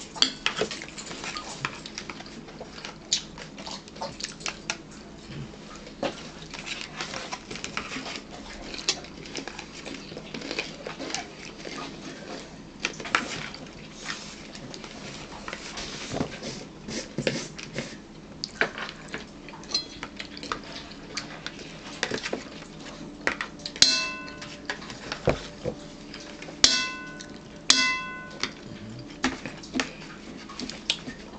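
Close-up crunching and chewing of raw celery, with frequent sharp clicks and small knocks of handling at the table. Near the end come three short, high ringing tones.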